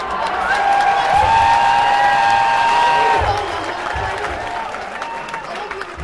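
Concert crowd cheering and applauding. A held pitched tone of a few notes at once sounds over it from about half a second to about three seconds in, and the cheering fades a little towards the end.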